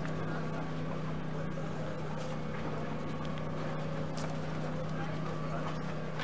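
A steady low motor hum with a few overtones, over a faint even background noise.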